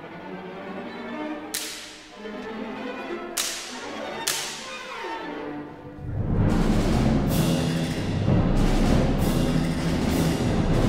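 An orchestral whip (slapstick) cracks three times, each crack ringing away in the hall, over the quietly playing orchestra. About six seconds in, the full percussion section comes in together, loud and dense, with timpani and repeated drum strokes.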